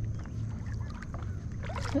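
Lake water lapping and sloshing around a person wading waist-deep, with a few faint small splashes over a steady low rumble.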